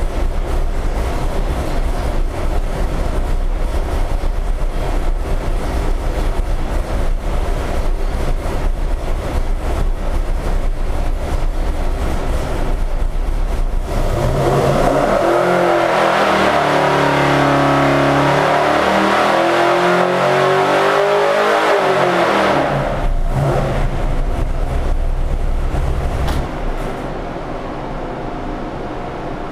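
Pump-gas 496 cu in big-block Chevrolet V8 with a hydraulic roller cam and a 1000 CFM carburettor running on an engine dynamometer. It runs steadily at low speed for about fourteen seconds, then makes a pull, its revs climbing steadily for about seven seconds. The revs then drop quickly back down, and it settles to a quieter idle near the end.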